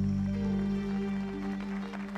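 A string ensemble with cello and violins holds the closing chord of the song: a steady low note sustained underneath, with a few upper notes moving above it about halfway through.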